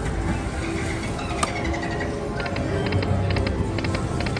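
Dragon Link Happy Lantern slot machine playing its game music while the reels spin. Near the end comes a run of short, quick tones.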